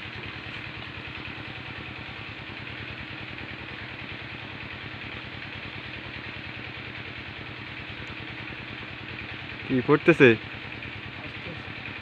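A small engine running steadily in the background, an even drone with no knocks or chopping strokes.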